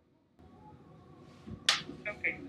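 A faint low thump followed by a single sharp click near the end, over a faint steady background.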